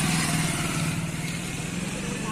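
A small motorcycle engine running close by as the bike rides past, a steady hum that slowly fades.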